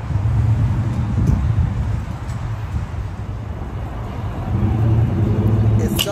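Low rumble of road traffic, swelling at the start and again near the end.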